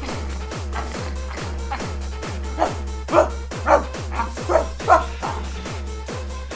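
Electronic dance music with a steady kick drum, about two beats a second. From about two and a half seconds in, five or six short, loud bark-like cries sound over the beat.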